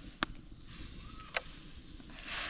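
Wooden cooking stick knocking twice, about a second apart, against an aluminium basin of hot water while a chicken is turned in it, over a faint steady hiss.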